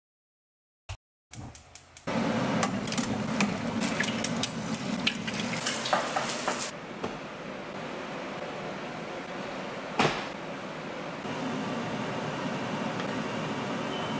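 Cooking sounds: about a second of silence, then utensils clattering and clinking against dishes and a pan, followed by a steady sizzle of food frying in a pan on a gas stove, with one sharp knock about ten seconds in.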